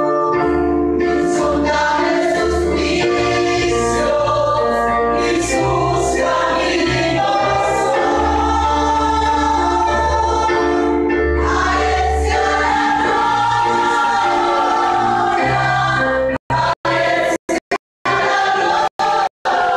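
Many voices singing a Christian worship song together over loud instrumental accompaniment with a steady bass. Near the end the sound drops out abruptly several times in short gaps.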